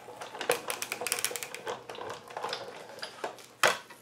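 Sizzix Big Shot die-cutting machine hand-cranked, an embossing plate sandwich with metal dies feeding through its rollers with a run of clicks and rattles. One louder clack comes near the end as the plates come free.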